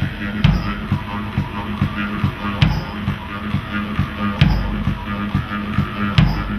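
Live one-man-band music: a bass drum kicked in a steady beat, about two beats a second, under a droning instrument played at the mouth.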